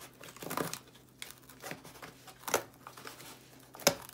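Scissors cutting through a corrugated cardboard box: several short crunching snips, the loudest near the end.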